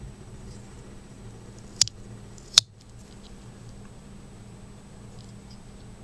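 Two sharp clicks from a pocket knife being handled, just under a second apart, the second louder, with faint light handling ticks around them.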